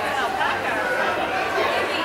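Background chatter of several people talking at once, with no clear words.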